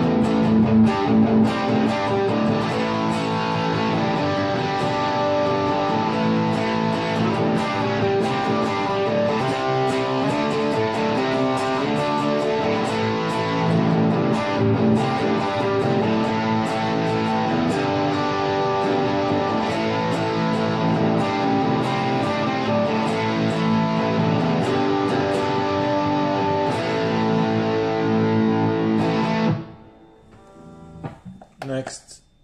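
Electric guitar (Epiphone Les Paul on its bridge pickup) played through the Boss GT-1000's Fat Distortion model, heard from KRK Rokit 8 studio monitors through a phone microphone. The distorted playing runs steadily and stops just before the end.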